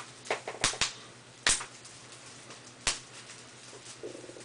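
Bubble wrap being popped between the fingers: about five sharp pops at uneven intervals, with small plastic crackles between them.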